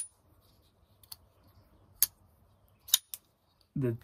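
Folding knife being flicked open and shut: a few short, sharp metallic clicks of the blade snapping out and locking, the loudest about two and three seconds in.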